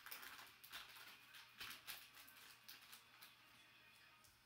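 Faint crinkling and rustling of a foil trading-card pack being handled and opened: a scatter of small crackles that thins out over the last second or two.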